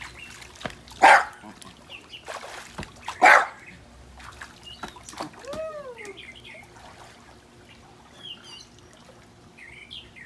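A small terrier barks twice, about two seconds apart, with faint bird chirps and light water sounds around it.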